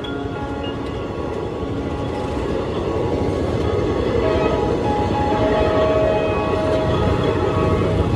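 Passenger train coaches running past close by, a steady rumble of wheels on rails that grows gradually louder, with background music over it.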